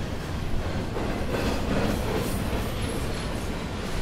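Passenger train running past close by, a steady noise of wheels on the rails.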